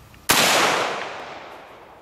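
A single shot from an Auto Ordnance M1 Carbine firing .30 Carbine, about a third of a second in, loud and sharp, with a long echo that dies away over about a second and a half.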